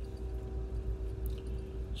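Steady low rumble of a moving passenger train heard from inside the car, with a flat, even hum held over it that stops just before the end.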